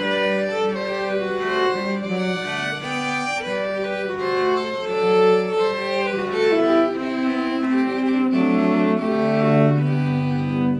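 Live string trio, a violin, a second violin-family instrument and a cello, playing a Celtic tune: a bowed melody over a moving cello line.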